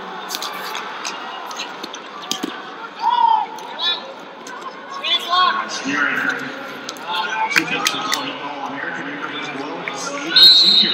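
Wrestling shoes squeaking and knocking on the mat during a wrestling bout, with scattered shouts from the sidelines echoing in a large hall.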